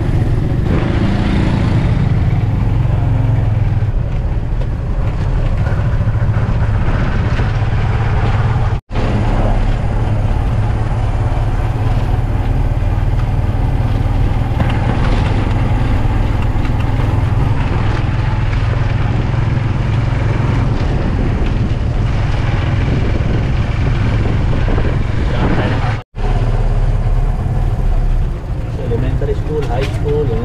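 Motorcycle engine of a tricycle running steadily while under way, heard from inside the sidecar. The sound cuts out sharply for a moment twice.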